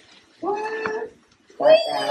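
A baby's voice: two short high-pitched calls, the first about half a second in and a louder one starting near the end.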